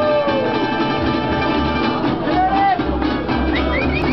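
Gypsy jazz (jazz manouche) jam: several acoustic guitars playing a swing tune, with an upright double bass underneath.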